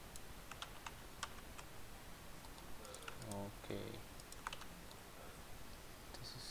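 Faint, irregular clicking of a computer keyboard and mouse as someone works at a PC, with a short murmured voice sound a little past halfway.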